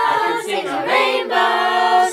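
Background music: a group of voices singing in harmony without instruments, holding long notes.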